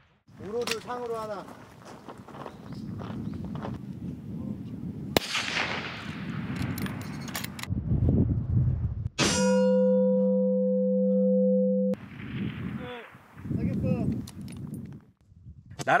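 A steel plate target rings with a clang after being hit by a rifle bullet: a steady metallic ringing for about three seconds that cuts off abruptly. It is preceded by a sharp rifle shot about five seconds in, with voices around it.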